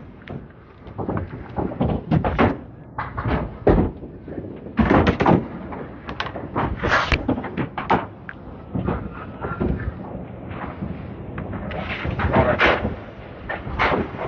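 Candlepin bowling alley: an irregular run of sharp knocks and clatters as balls strike and topple wooden candlepins and the pin machinery works.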